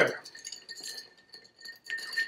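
Long bar spoon stirring ice in a cocktail glass: a string of light, quick clinks of ice and spoon against the glass.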